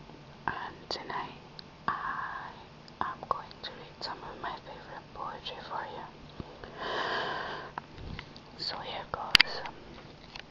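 Soft whispered speech, broken into short phrases, with a few small clicks and one sharp click near the end.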